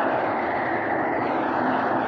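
A crowd applauding: many hands clapping in a dense, steady clatter.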